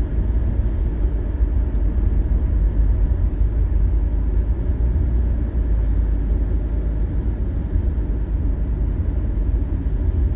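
Steady low rumble of a car's tyres and engine heard from inside the cabin while driving on a highway.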